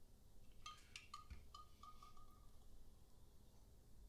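Faint clinks of glassware, a glass hydrometer being set down into its glass test jar, with a short ringing, a little under a second in; otherwise near silence.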